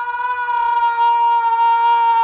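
A young man screaming: one long cry held at a single steady high pitch.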